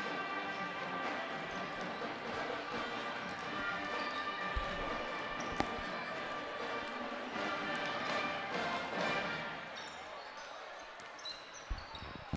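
Basketballs bouncing on a hardwood gym floor, with a few sharp bounces standing out over background music and crowd chatter.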